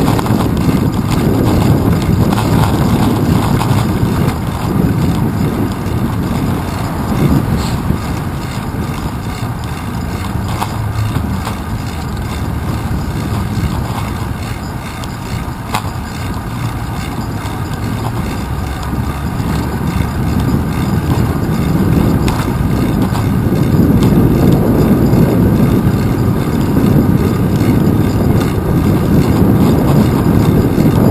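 Wind and road vibration on the microphone of a handlebar-mounted camera on a moving bicycle: a steady low rumble that eases a little about halfway through and is loudest in the last few seconds.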